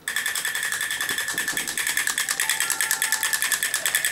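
A battery-operated toy elephant drummer rapidly beating its drum, about a dozen strokes a second, with a steady high tone running through the beat.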